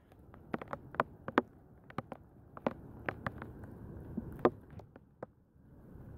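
Irregular light taps and knocks, a dozen or so scattered through a few seconds, from a caught smallmouth bass being handled and laid on a measuring board on a boat deck.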